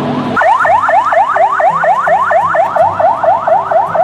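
Electronic siren-like wail, a rapid rising whoop repeated about four times a second, laid over background music; it begins abruptly about half a second in.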